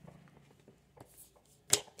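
A deck of tarot cards being shuffled by hand: soft scattered card ticks, then one brief sharp flick of cards near the end.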